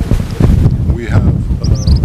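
Wind buffeting a handheld microphone outdoors: an uneven low rumble under a man's speech. A few short, high chirps, like a small bird, come near the end.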